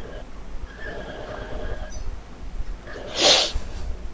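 Faint voice murmur over a video call, then about three seconds in a single short, loud breathy burst from a person, like a sneeze or a hard puff of breath.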